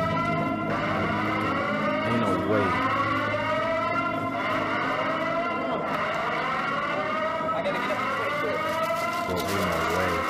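An electronic alarm wailing in repeated rising sweeps, each tone climbing for about a second and a half before it starts again, over a low steady drone.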